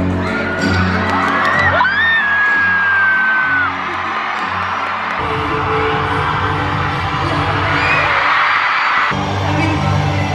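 Live pop concert heard from the stands of a packed stadium: amplified music over a cheering crowd, with one long high-pitched scream held for about three seconds near the start. The music changes about five seconds in.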